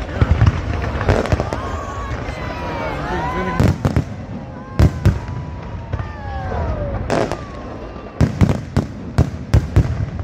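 Fireworks display: sharp bangs of bursting shells at irregular intervals, coming in a quick run of reports near the end, with sliding whistling tones that glide down in pitch between the bangs over a steady rumble.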